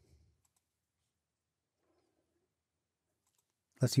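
Near silence with a few faint computer mouse clicks as menu items and a drop-down list are clicked; a man's voice begins near the end.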